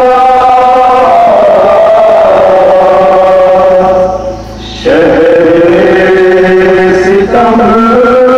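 Men chanting a nauha, a Shia Muharram lament, in long held notes, with a short break a little past the middle before the next phrase begins.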